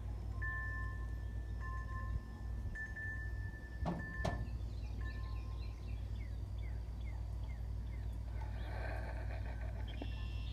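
Two steady high ringing tones, one above the other, sounding on and off, with two sharp knocks about four seconds in.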